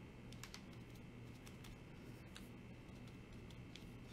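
Near silence: faint room hum with a few light, scattered clicks and ticks from fingers handling a plastic pumpkin and fabric leaves.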